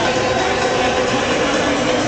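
Football stadium crowd noise mixed with music over the PA system, a loud, steady, dense wash of sound.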